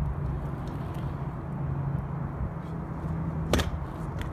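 Stunt scooter's wheels rolling on asphalt with a steady low rumble, then one sharp clack about three and a half seconds in as the scooter lands a flatground flip trick.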